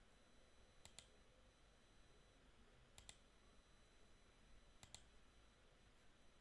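Computer mouse button clicked three times, each a quick pair of clicks, about two seconds apart, faint over near silence.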